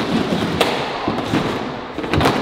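A hard-shell suitcase, ridden by a person, bumping and scraping down wooden stairs, with one sharp knock about half a second in.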